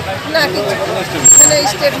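A woman talking over street background noise, with a brief thin high-pitched squeal about halfway through.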